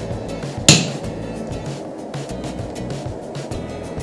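A striker's sledgehammer hits a handled hot punch once, about a second in, a medium blow driving it into a glowing steel billet on the anvil to start punching the hammer's eye: a single sharp metallic strike with a short ring.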